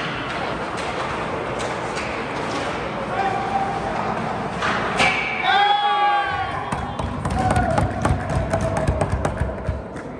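Spectators' voices in an ice hockey rink, talking and calling out just after a goal, with a fast run of sharp taps from about seven seconds in.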